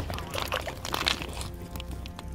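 Water sloshing and splashing in an augered ice-fishing hole, in short irregular splashes.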